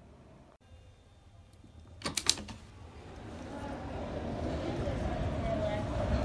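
A quick rattle of sharp clicks about two seconds in, then city street sound from below that swells steadily louder, with faint voices in it.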